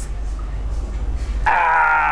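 A pause in an a cappella rap verse with only a low steady rumble, then about one and a half seconds in a man's voice holds one steady pitched sound for under a second, his hands cupped over his mouth.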